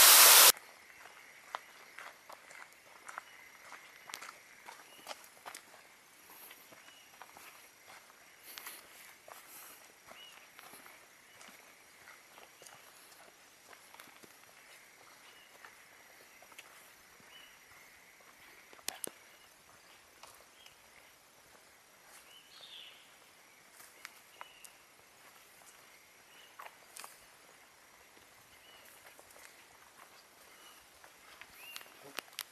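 Footsteps on a dirt forest trail: irregular scuffs and crunches of walking hikers, with a faint steady high-pitched hum and small chirps behind them. In the first half second a waterfall's loud rush cuts off suddenly.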